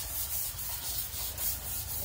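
Steady rustling, rubbing noise with a low rumble underneath.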